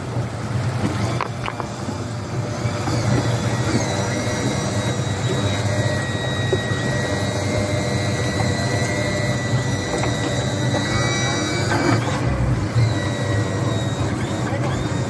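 Bank of 250 hp outboard motors idling steadily with a low hum and a faint high whine, the boat stopped.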